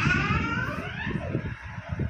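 Rumbling handling noise on a phone's microphone as the phone is swung around, fading out toward the end. A brief high-pitched sliding sound runs through the first second.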